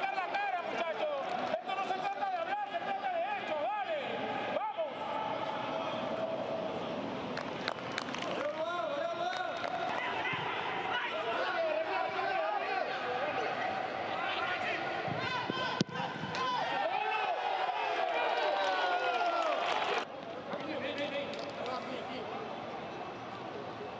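Football match commentator talking continuously in a raised, excited voice, calling the play. A single sharp knock stands out about sixteen seconds in.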